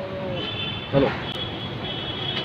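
Street ambience with traffic running. A short burst of a voice comes about a second in, and a steady high-pitched tone sounds from about half a second in.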